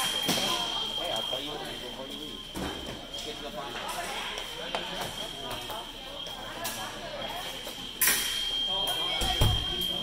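Fencing scoring machine sounding its steady high beep, the signal that a touch has registered. It is loud for the first second or so, fades to a faint hum, and comes back loud from about eight seconds in. There is a low thump near the end.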